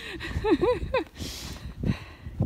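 A young woman laughing in a few short, high bursts, over wind rumbling on the microphone in a snowstorm.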